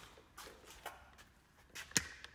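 Handling noise from a plastic water-softener control valve being lifted and moved over the tank: a few light knocks and clicks, with one sharp click near the end.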